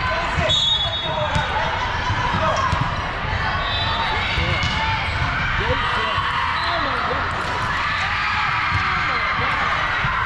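Hubbub of many voices in a large echoing sports hall, with scattered knocks of volleyballs being hit and bouncing on the hardwood courts.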